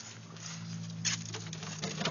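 Irregular rustling and scuffing noises over a low steady hum, with a louder rustle about a second in.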